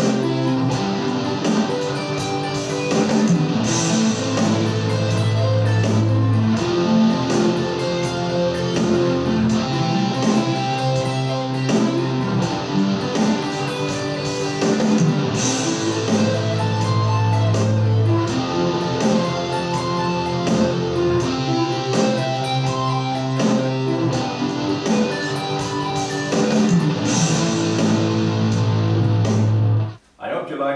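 Electric guitar playing continuous arpeggios, one chord shape flowing into the next, over a backing track with bass and drums cycling through the progression A minor, F, C, G.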